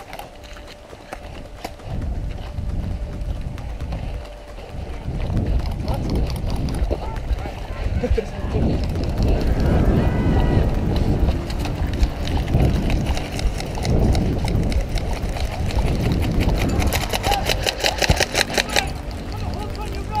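Heavy rumbling buffeting and jostling noise on a body-worn camera while an airsoft player runs, with footfalls and rattling kit. A fast run of sharp clicks comes near the end.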